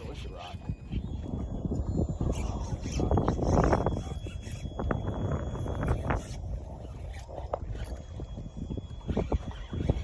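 Wind rumbling unevenly on the microphone on an open boat, with a few faint clicks and a man's brief "oh" a few seconds in.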